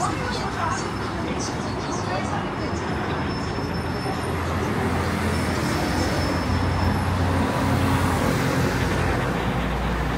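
City street traffic: steady road noise of passing cars and buses, with a low engine rumble that swells about halfway through as a vehicle passes close.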